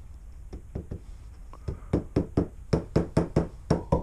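A small metal hammer tapping the spine of a sewn book block of handmade paper to round it. It is a quick run of light taps: a few scattered ones at first, then several a second and louder through the second half.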